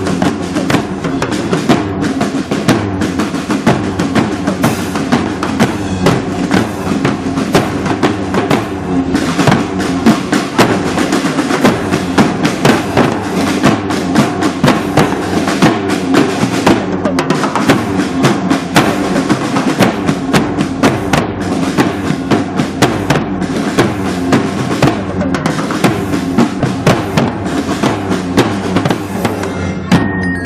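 Marching drum band playing live: bass drums and snare drums beating a dense, continuous rhythm, loud throughout.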